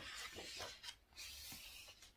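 A paper page of a picture book being turned: a faint rustle and rub of paper with a few soft ticks.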